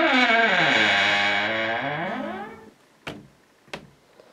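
A loud, distorted pitched sound effect whose pitch sinks and then climbs again, fading out after about two and a half seconds. Two light knocks follow near the end.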